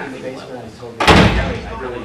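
A door shutting with a loud thud about a second in, over faint background talk.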